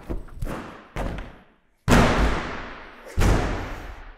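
A large inflatable ball being struck and knocked about, making a run of about five thumps. The two loudest come about two and three seconds in, and each trails off slowly.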